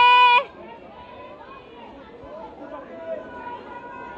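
A loud, high-pitched shout held on one note cuts off about half a second in, followed by quiet chatter of people around a large hall. A faint steady high tone runs underneath.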